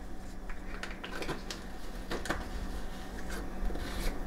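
Faint scattered clicks and taps of a spice jar and measuring spoon being handled while cinnamon is measured into a metal mixing bowl, over a steady low hum.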